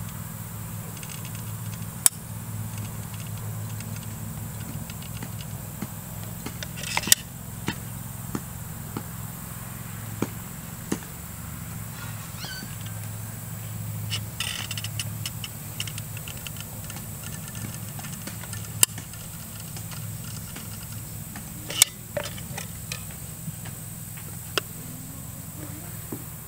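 Scattered sharp clicks and knocks from a caulking gun being worked and metal post caps handled and set onto wooden posts, over a steady low hum.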